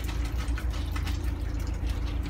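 A steady low machine hum with a faint droning tone, and soft wet squishing from soapy fur being lathered by hand.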